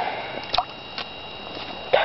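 Quiet handling noise: a couple of light clicks, about half a second and one second in, as a trap wire is pulled tight to a wooden stake in shallow water, over a faint steady hiss.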